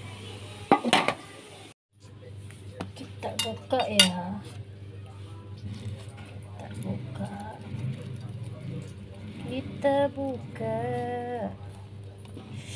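Cutlery clinking and knocking against a plate as a steamed pepes is opened, with a few sharp knocks about a second in and again around four seconds. A voice is heard briefly near the end.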